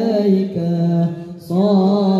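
A group of boys singing an Islamic devotional chant (sholawat) together through microphones and a PA loudspeaker, in long held, gliding notes. The voices thin out about halfway through and come back in strongly a moment later.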